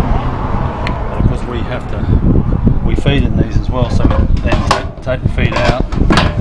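Wind rumbling on the microphone, with sharp metal clicks and knocks from the truck's aluminium crate fittings being handled, and indistinct voices in the second half.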